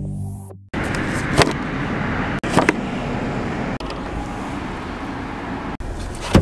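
Synthesizer intro music fades out within the first second. After a sudden cut comes a steady rushing background noise, with a few sharp clicks and knocks from hands working the vehicle's interior fittings.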